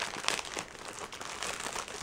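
Soft, irregular crinkling of a plastic wrapper on a pack of training pants as it is handled and opened.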